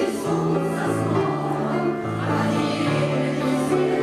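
Choir of mostly women singing a lyrical song, with a steady line of long held low notes underneath.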